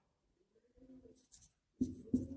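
Faint strokes of a marker pen on a whiteboard as letters are written, a few short scratchy sounds.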